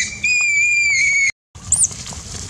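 Baby macaque screaming in distress: a long, loud, high-pitched cry with a brief break just after the start, cut off suddenly about a second and a quarter in, then a short high squeak near the end.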